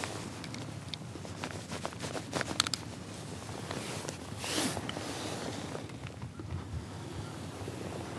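Rustling and light clicks of a caught smallmouth bass being unhooked and lifted by hand in a kayak, with a cluster of clicks about two seconds in and a brief swell of rustling a little after four seconds.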